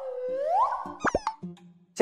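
Cartoon comedy sound effects added in editing: a whistling tone that swoops down and back up, then a few quick rising pops about a second in, over soft music notes.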